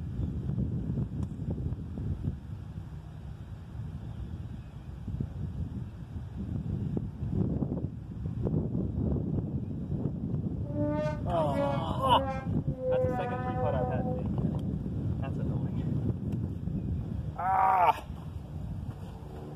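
Wind rumbling on the microphone throughout, with short bursts of a person's voice about two-thirds of the way through and again just before the end.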